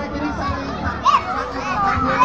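Young children's high-pitched voices calling out and chattering on a fairground ride, with one sharp high cry about a second in.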